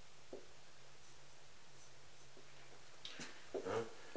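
Faint whiteboard marker writing, light scratchy strokes, over a low steady hum. A brief louder sound comes near the end.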